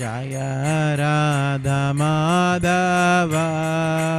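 A man's solo voice chanting a Vaishnava devotional mantra in long held notes that bend slightly in pitch, with short breaks between phrases. A faint, regular jingle of hand cymbals keeps time behind the voice.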